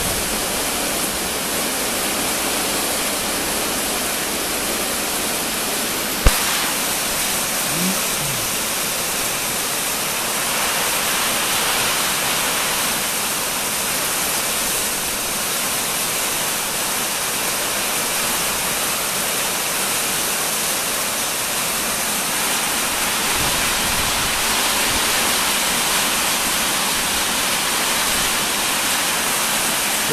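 Heavy rain, with hail, pouring steadily on the metal roof and walls of a building, a dense even hiss. One sharp knock about six seconds in.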